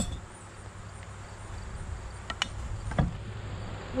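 Low rumble of wind buffeting the microphone outdoors, with insects faintly in the background and a few light clicks around two and three seconds in.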